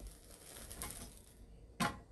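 Faint rustling and light clicking as pieces of dried squid are handled and laid on the metal grate of a portable gas burner, with one sharper click near the end.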